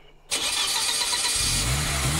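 Car engine starting, played over the air as a sound effect. A sudden wash of noise comes in about a third of a second in, and about one and a half seconds in the engine's low running note joins, rising slightly.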